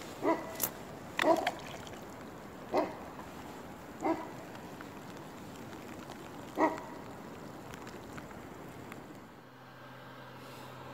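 Small coins plopping into a pond one after another: about seven short, separate plops over the first seven seconds, spaced irregularly, over faint outdoor background.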